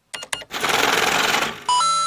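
A short segment-transition sound effect: a few quick clicks, about a second of dense rattling clatter, then a bright ringing ding near the end that carries on past it.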